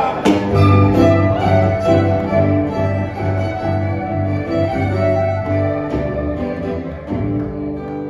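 A live band plays the instrumental introduction to a folk song: a strummed acoustic guitar and a violin melody over a bass line.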